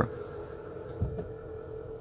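Faint steady hum of a powered rear seat backrest folding back into position in a luxury van, with a soft low thump about a second in.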